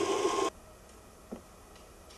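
Motorized kinetic sculpture's mechanism running with a steady whir and a thin steady tone, cut off abruptly about half a second in. Then a quiet room with a single faint knock.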